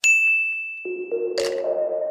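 A single bright ding that rings on one high tone and fades over more than a second. Held music notes come in partway through.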